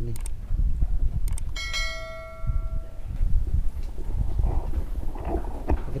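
A couple of sharp metallic knocks, then a struck metal object ringing clearly for about a second and a half before dying away, over a steady low rumble on the microphone.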